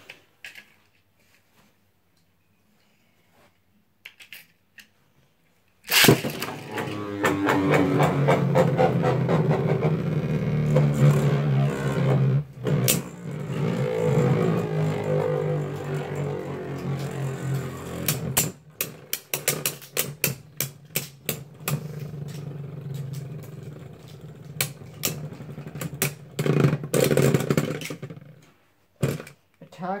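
Two Beyblade Burst spinning tops hit the plastic stadium with a sharp clack about six seconds in, then whir and grind as they spin and clash. In the latter part the whirring grows quieter under a rapid run of clicks and rattles, and it stops shortly before the end.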